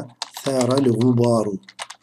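Typing on a computer keyboard: a quick run of keystrokes near the end, after about a second of speech.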